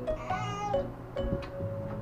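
A toddler's brief high-pitched squeal, rising and then holding for about half a second, over background music with held notes.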